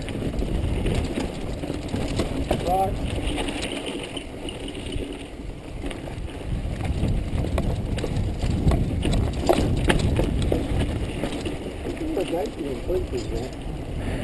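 Mountain bike riding down a rocky dirt singletrack: a steady rush of wind on the camera microphone, with the rattle and clatter of tyres and bike over rock. The knocks come sharper around nine to ten seconds in.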